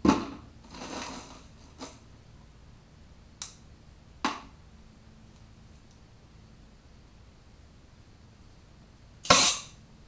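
Short blasts of compressed air from a needle nozzle on an air hose, fed by a scuba tank, fired into a lobster antenna to blow the meat out like a straw. There are several brief hisses and clicks, and the loudest and longest blast comes near the end.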